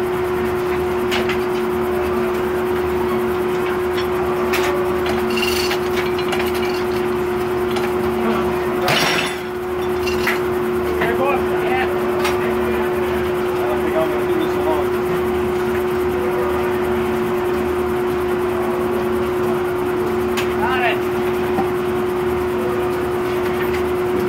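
Circle sawmill running idle between cuts: the blade and its drive give a steady, even hum with no change in pitch. About nine seconds in there is a short clatter, the kind of knock made when a log is shifted on the carriage.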